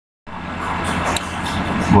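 A moment of dead silence at an edit cut, then a steady low hum and hiss of background noise that slowly grows louder, until a man's speech starts at the very end.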